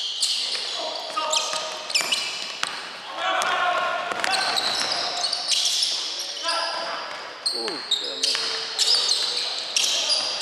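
Basketball game sounds in a large gym: sneakers squeaking again and again on the hardwood floor and the ball bouncing, echoing off the hall.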